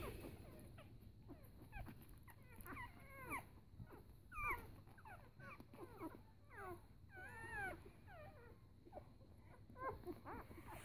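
Four-day-old puppies whimpering and squeaking faintly while they nurse. It is a string of short, high squeaks, many of them bending up or down in pitch, coming about every half second from a couple of seconds in.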